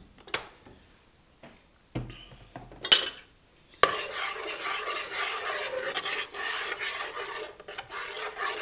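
A few knocks and a sharp clack, then, from about four seconds in, a metal spoon stirring thick blended vegetable sauce in a pot, scraping and clinking against the pot's sides and bottom.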